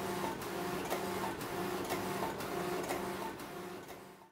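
Industrial flatbed knitting machine running, its carriage travelling across the needle bed with a steady whine broken by sharp clicks that come in pairs about once a second. The sound fades out near the end.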